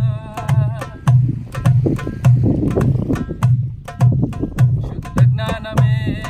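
Darbuka played live in a steady rhythm: deep bass strokes just under two a second, with sharp, dry rim strokes between them. A man's singing voice comes in over the drum in the first second and again near the end.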